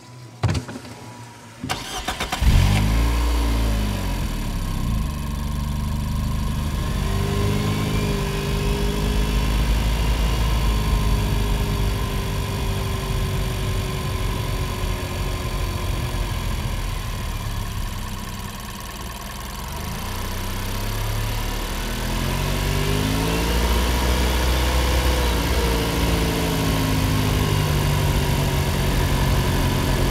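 2021 Nissan Rogue Sport's 2.0-litre four-cylinder engine, heard from inside the cabin. It starts about two seconds in with a short rev flare that settles to idle. The engine note then rises and eases off twice as the SUV moves off slowly.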